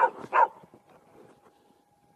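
A dog barks twice in quick succession in the first half second during play.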